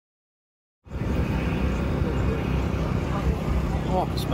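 Silence for nearly a second, then a steady low rumble of motorsport starting-grid background noise sets in, with faint voices near the end.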